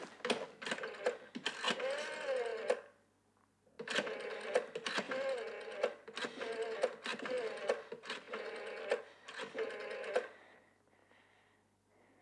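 Rotary telephone dial being turned and let go digit after digit, each return a quick run of clicks with a whir. There is a break of about a second after the first few digits, and the dialling stops about ten seconds in.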